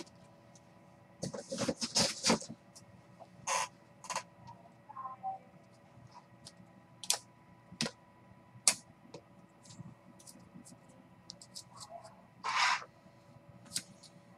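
Hard plastic trading-card holders clicking and clacking against each other and the table as they are handled and set down, with scattered light clicks and a few short scrapes. The loudest is a brief scrape near the end.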